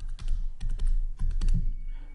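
A stylus pen tapping and scraping on a writing tablet in a quick run of separate clicks as short marks are written, over a steady low hum.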